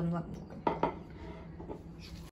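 A glass mixing bowl knocks twice on the worktop as it is moved into place, two quick clinks a fraction of a second apart.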